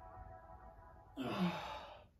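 A woman's breathy sigh of strain while stretching sore legs, starting a little past halfway and falling in pitch, over soft background music.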